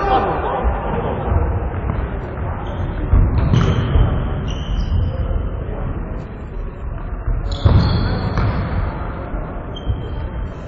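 Indoor futsal play echoing in a sports hall: the ball thudding on the wooden floor as it is kicked and bounced, with louder thuds about three seconds in and just before eight seconds. Short high squeaks and players' calls come in over the rumble.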